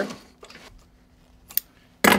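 Faint steady hum from the idling sewing machine, with a few light clicks and one sharp click about one and a half seconds in as the work is handled at the presser foot.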